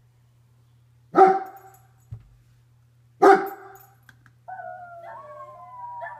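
German Shepherd barking twice, two single loud barks about two seconds apart, then from about halfway through a long, wavering howl that slides up and down in pitch.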